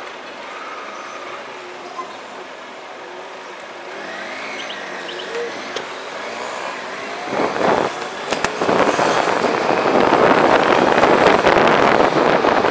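Motorcycle engine running as it rides, its pitch gliding up and down around the middle. From about seven and a half seconds in, a loud rushing of wind on the microphone builds and takes over.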